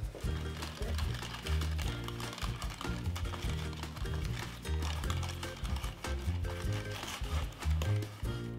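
Instrumental background music with a rhythmic pulse and a bass line that moves from note to note.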